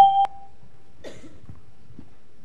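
A steady electronic beep tone that cuts off with a click about a quarter second in, followed by quiet room tone.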